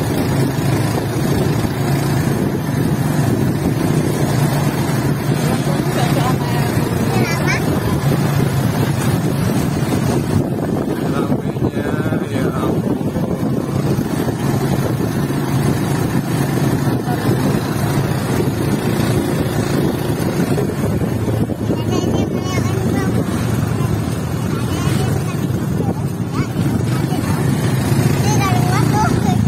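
Suzuki motorcycle engine running steadily while it pulls a passenger sidecar (becak motor) along a road, heard from the sidecar with wind and road noise.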